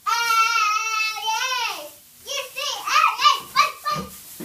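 A young girl chanting a cheer: one long held note for about two seconds, ending with a rise and fall in pitch, then a quick run of chanted syllables.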